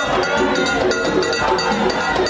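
Haitian Vodou ceremony music played live: a fast, steady beat of percussion with a crowd singing along.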